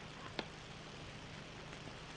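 Steady hiss with a low hum from an old film soundtrack, and one short faint click about half a second in.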